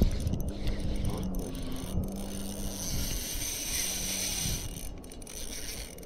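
Spinning reel being wound in, its gears whirring steadily as line is retrieved, over a steady low hum that fades out partway through.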